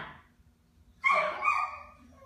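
A dog barking twice in quick succession about a second in, the second bark half a second after the first.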